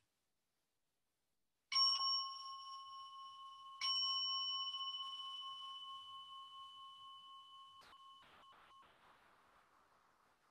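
A meditation bell struck twice, about two seconds apart. Each stroke rings on with a clear tone that slowly fades, marking the end of the silent sitting period. A few faint knocks come near the end, and the ringing stops.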